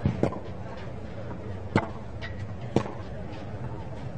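A tennis rally on a clay court: sharp, crisp racket strikes on the ball, roughly once a second, two close together at the start, over a low, steady crowd background.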